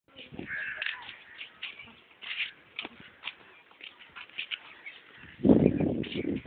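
Birds calling outdoors: many short, separate chirps and caw-like calls. Near the end a loud, low rumbling noise comes in.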